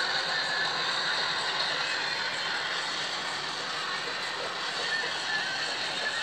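Sound of a video playing on a smartphone's small speaker: a steady wash of crowd noise from a hall.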